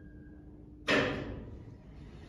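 A single sudden bang about a second in, with a short ring-off, of the kind made by an elevator's landing door banging shut or its lock engaging. A faint steady hum runs underneath.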